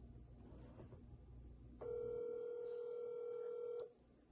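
Phone ringback tone from a smartphone on an outgoing call: one steady two-second ring starting about two seconds in and cutting off sharply, the call not yet answered.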